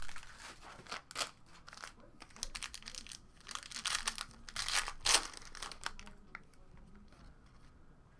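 Foil wrapper of a basketball trading-card pack being torn open and crinkled, in irregular short crackles that die down about six seconds in.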